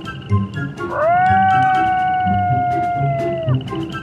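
A single long cat meow, rising at the start, held steady for about two and a half seconds and dropping away at the end, over background music.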